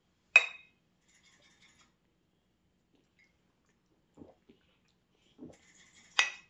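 A single clink of a glass root beer bottle against a small glass mug in a toast: one sharp strike with a short ringing tone. After it, a few faint soft sounds near the end.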